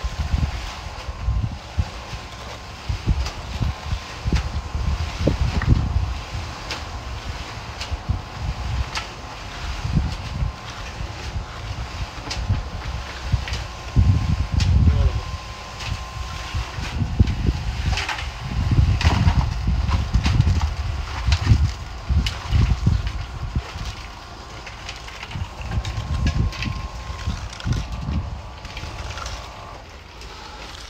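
Bricklayer's trowel scraping and tapping on wet mortar and brick, short clicks scattered throughout, over an irregular low rumble and a faint steady hum.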